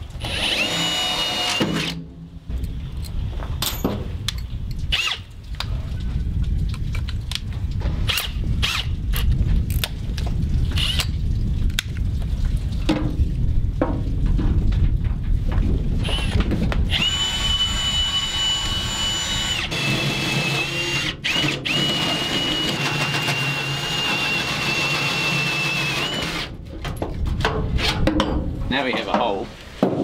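A handheld power tool running in spells against the aluminium end of a dinghy hull tube, cutting an opening for a cable. From about 17 s to 26 s it gives a steady high whine.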